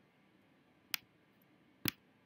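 Two computer mouse clicks about a second apart, the second one louder, against faint room tone.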